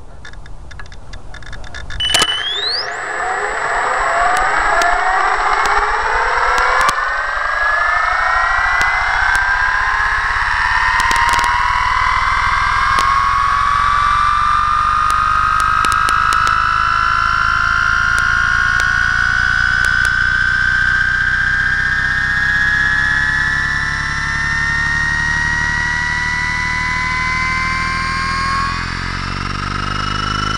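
Electric motor and main rotor of a T-Rex 700 RC helicopter spooling up: a short beep about two seconds in, then a whine that rises steadily in pitch over about ten seconds and keeps creeping higher as the head speed builds, with scattered sharp clicks.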